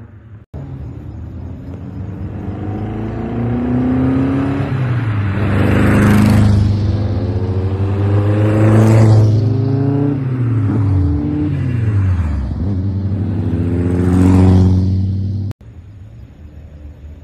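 A line of Super Seven-type lightweight open sports cars driving past one after another, about four pass-bys, each engine rising as the car approaches and dropping in pitch as it goes by. The sound cuts off abruptly near the end.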